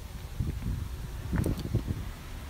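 Handling noise from a handheld camera being moved around: a low rumble with a few soft bumps and rustles.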